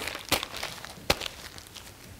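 A sheet of flip-chart paper being crumpled into a ball by hand: crackling rustles with two sharper crinkles, about a third of a second and about a second in, thinning out toward the end.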